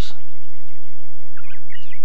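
A bird gives a few short, quick chirps about a second and a half in, over a steady low hum.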